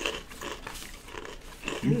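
Close-up chewing of a crunchy snack, with faint crackles of paper being handled.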